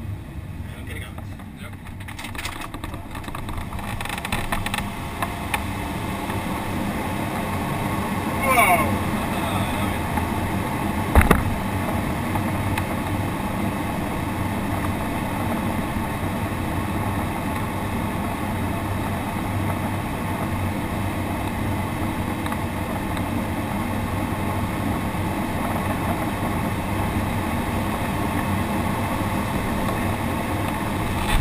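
Airflow rushing over the ASK-21 glider's canopy, heard from inside the cockpit, building over the first few seconds as the glider noses down and then holding steady. A short falling tone comes about eight seconds in and a single sharp knock about eleven seconds in.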